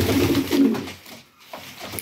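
Domestic pigeons cooing, a low coo that fades out about a second in.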